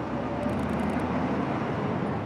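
Steady outdoor street ambience with road traffic running, and a quick run of faint ticks about half a second in.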